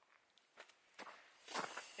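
Near silence with a few faint clicks, then from about a second and a half in the crunch of a mountain bike's tyres on a snowy trail, growing louder as the bike approaches.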